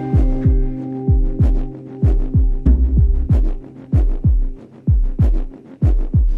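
A stripped-down stretch of a recorded song: deep, thudding drum beats that drop in pitch, about two to three a second in an uneven pattern, over a steady low drone, with light high clicks.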